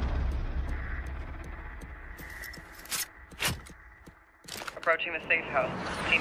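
Action-film soundtrack: a low rumble that fades away, then a few sharp cracks about three to four and a half seconds in, with someone starting to speak near the end.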